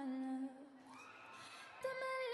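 Background song: a singing voice holds a hummed note that ends about half a second in, a softer rising tone follows, and the sung melody picks up again near the end.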